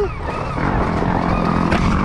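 Stark Varg electric dirt bike being ridden down a dirt forest trail: its electric motor's whine over the rattle of the bike and tyres on the rough ground.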